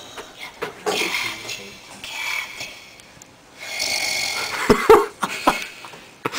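A person in the vocal booth making odd wordless noises with the voice and breath, heard over the studio monitor speaker. There are two long, rough, breathy noises, about a second in and near the middle, then a few short low grunts just before the end.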